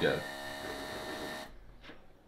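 A steady electrical hum made of several even tones, which cuts off abruptly about one and a half seconds in. A faint click follows just before the end.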